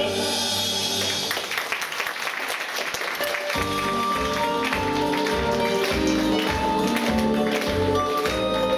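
Audience applause for about the first three and a half seconds as a sung duet ends. Then the music resumes with a bouncy, regular bass beat and melody for a dance section.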